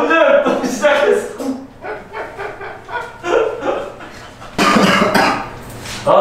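A man laughing hard in broken bursts, with a louder, rougher burst of laughter near the end.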